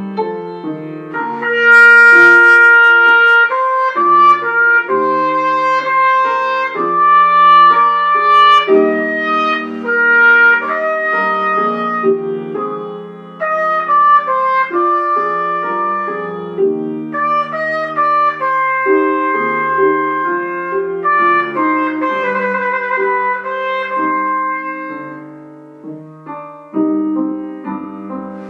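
Trumpet playing a loud, sustained melody over grand piano accompaniment. The piano plays alone for the first second or so before the trumpet comes in, and near the end the trumpet pauses briefly while the piano carries on.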